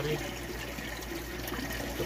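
Steady background hiss of trickling water, with a low hum underneath.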